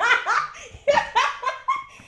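A woman laughing heartily, in two loud high-pitched bursts, the second starting about a second in.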